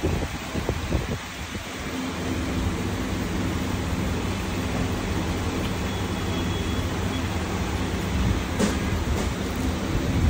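A steady low machine hum sets in about two seconds in and holds steady, with a couple of light clicks near the end.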